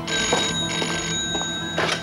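Rotary desk telephone's bell ringing, two rings with a short break between them. Near the end comes a brief clatter as the handset is picked up.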